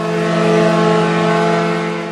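A loud, steady, horn-like tone held at one low pitch, rich in overtones, with no change in pitch.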